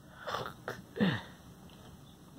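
A person's breathy, wordless vocal sounds: a rush of breath, then a short, loud voiced burst falling sharply in pitch about a second in.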